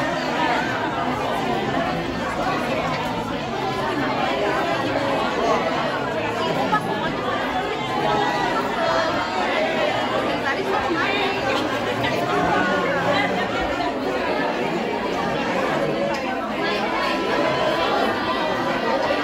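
Crowd chatter: many people talking at once, a steady din of overlapping voices with no single speaker standing out.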